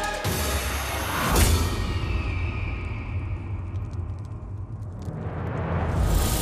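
Dramatic background score with no speech. A swooshing hit comes about a second and a half in, then a low rumble holds while the higher sounds die away, and a new swell rises near the end.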